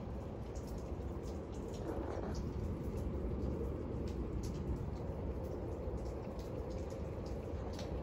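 Steady outdoor wind noise buffeting the microphone, with faint scattered ticks.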